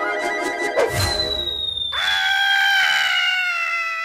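Cartoon sound effects over music: a long, slowly falling whistle starts about a second in. From about two seconds it is joined by a cartoon fox's drawn-out scream, also sinking in pitch, as he is flung away through the air.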